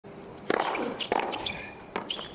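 Tennis racket striking the ball: the serve about half a second in and the return about half a second later, each hit followed by a short grunt falling in pitch. Another sharp hit or bounce comes near the end.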